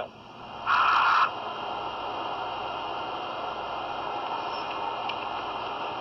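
Steady hiss of an open phone line through a speakerphone during a pause in the call, with a short, louder burst of noise about a second in.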